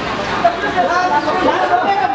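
Overlapping voices of several people talking at once in a street.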